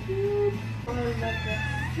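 Background music playing, with a house cat meowing.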